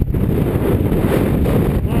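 Strong mountain wind buffeting the microphone: a loud, unsteady rumble with a hiss above it.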